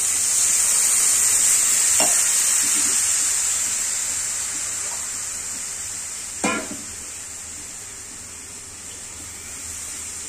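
Water poured into a hot iron kadai of frying vegetables, hissing loudly as it hits the hot oil and pan, the sizzle loudest at first and then slowly dying down to a simmer. Two short clinks, about two seconds in and again past six seconds.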